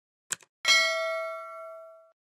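Subscribe-button animation sound effect: two quick mouse clicks, then a notification bell ding that rings with several clear pitches and slowly fades.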